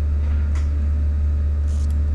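Steady low hum, with a faint click about half a second in.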